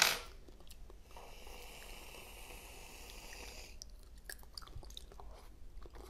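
Close-miked eating of a jelly sweet: a steady hissing sound lasting about two and a half seconds, starting a second in, followed by scattered small clicks of chewing.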